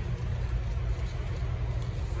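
A VW Polo's 1.0-litre three-cylinder petrol engine idling, a steady low hum.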